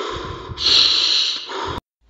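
A man breathing loudly through his nose close to the microphone between sentences. A strong, hissy breath lasting nearly a second starts about half a second in. The sound cuts off abruptly to silence near the end.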